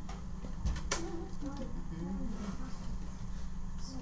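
Clicks and light scraping from prying at the side panel of an older desktop computer case that is stuck on a screw, with one sharp click about a second in. A faint murmured voice sits over a steady low hum.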